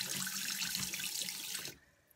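Water running from a tap into a bathroom sink while it is splashed onto the face to rinse off soap; the running water stops abruptly near the end.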